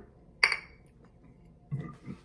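A single sharp clink of a glass malt-liquor bottle about half a second in, ringing briefly.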